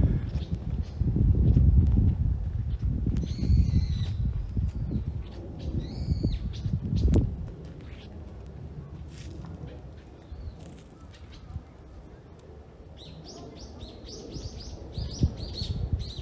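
Small birds calling: short arched chirps about three and a half and six and a half seconds in, then a quick run of high chirps near the end. A low rumbling noise fills the first half and drops away after about seven seconds.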